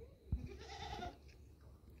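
A short animal call, about half a second long, comes about a second in, with a soft knock just before it.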